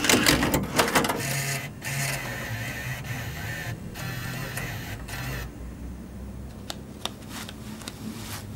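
Cardboard packaging being handled and slid about: a scraping, whirring run of about five seconds, broken by two short pauses, then a few light clicks.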